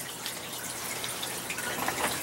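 Water trickling steadily in an aquaponics fish-tank system, a continuous even splashing with no distinct drips or knocks.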